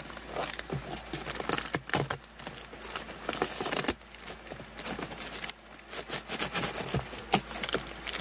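Plastic bag crinkling and cardboard rustling as hands pull at plastic-wrapped kit parts taped inside a cardboard box, with irregular crackles, scrapes and a few sharp clicks.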